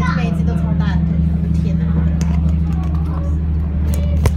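Steady low drone of a semi-submersible boat's engine, heard from inside its underwater viewing cabin.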